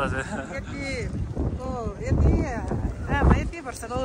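Wind buffeting the microphone in uneven gusts, under voices talking.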